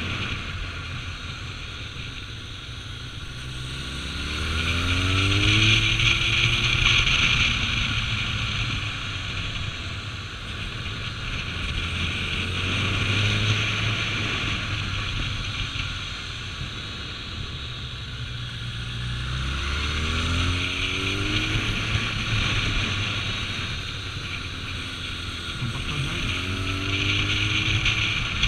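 Kawasaki ZRX1200's inline-four engine running on the move, its pitch rising several times as the bike accelerates, over steady wind rush on the microphone.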